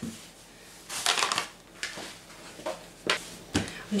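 Pasta dough being tipped out of a plastic mixing bowl onto a floured tabletop and pressed flat by hand: a few soft scuffs and rustles, then a couple of sharper knocks near the end.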